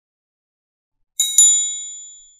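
Two quick bell dings, a fraction of a second apart, from a notification-bell sound effect, each ringing high and fading away.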